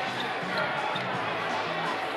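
Busy gymnasium hall ambience: background music with a stepping bass line, voices talking and a few light thumps, all echoing in the large room.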